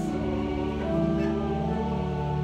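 Recorded choir singing slowly in long, held chords.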